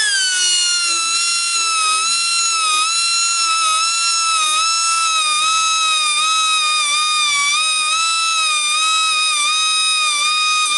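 Small handheld rotary grinder with a carborundum stone running at a steady high-pitched whine while sharpening the teeth of a sawmill bandsaw blade, its pitch dipping slightly now and then as the stone bears on the steel.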